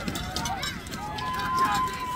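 Voices calling out across an outdoor field, too distant to make out words, over scattered knocks and clatters. About halfway in, one voice holds a long, steady call.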